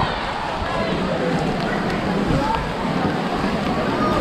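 A steady wash of rain and outdoor noise on a wet path, heavy in the lows, with faint voices of people talking nearby.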